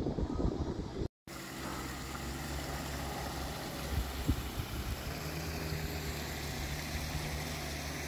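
A steady low mechanical hum over a faint wash of noise, starting after a brief dropout about a second in; its pitch steps up slightly about five seconds in.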